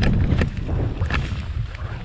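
Wind buffeting a GoPro's microphone as a skier descends at speed, with skis scraping and hissing over packed snow in sharp, irregular rasps.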